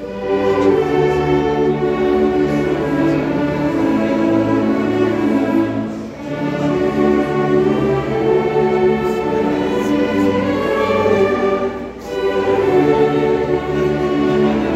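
A congregation singing a hymn together with a church orchestra of clarinets, saxophones, violins and cellos. The music moves in long phrases that break briefly about six and twelve seconds in.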